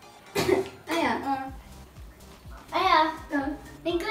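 Short vocal outbursts from a girl: a sharp, breathy, cough-like burst about half a second in, a second voiced burst falling in pitch about a second in, and a longer voiced sound near the three-second mark.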